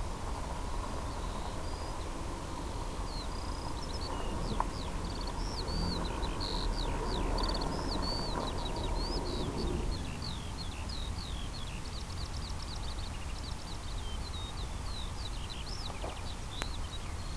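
A bird singing: a long, continuous run of rapid, varied high chirps and whistles, over a steady low rumble.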